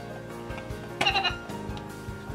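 VTech Sort & Discover Drum playing an electronic melody through its small speaker, with a short animal-call sound effect about a second in.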